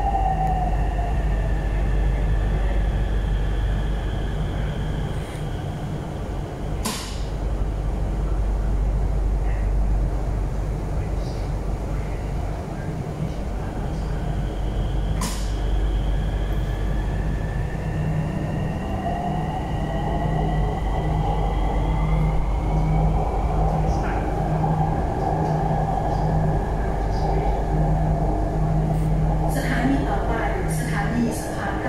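Bangkok MRT metro train running on an elevated track, heard from inside the carriage: a steady low rumble with an electric motor whine that falls in pitch at the start and rises again about eighteen seconds in. Two sharp clicks come at about seven and fifteen seconds.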